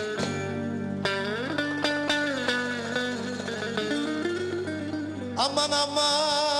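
Bağlama (Turkish long-necked saz) playing a plucked instrumental Turkish folk melody over a steady low backing drone. Near the end a held, wavering note enters.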